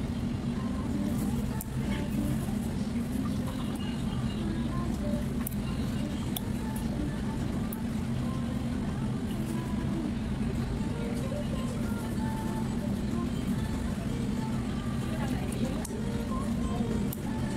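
A steady low mechanical hum runs throughout, with faint, indistinct voices underneath.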